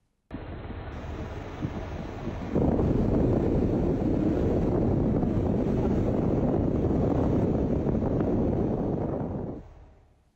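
Wind rushing over the microphone while riding a moving motorbike through traffic, a dense, steady noise. It steps up louder about two and a half seconds in and fades out just before the end.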